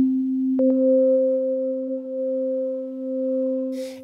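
Electronic synthesizer tones, the sound of a plant-sonification instrument: a steady low pure tone, joined about half a second in by a click and a second tone an octave higher. Both tones are held, swelling and easing slightly in level, and stop near the end.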